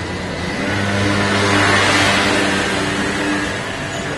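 A motor vehicle passing close by on the street, its engine hum and tyre noise swelling to a peak about halfway through and then fading.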